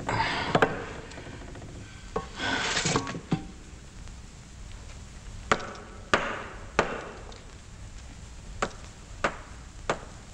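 Rock and rubble being dug and struck with a hand tool: two rough scraping, grating spells in the first three seconds, then six sharp knocks of the tool on rock, spaced unevenly about half a second to two seconds apart.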